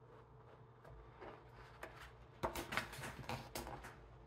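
Pages of a huge hardcover book being turned by hand: soft paper rustling from about a second in, then a quick run of crisp crackles and flaps in the second half as a page is flipped over.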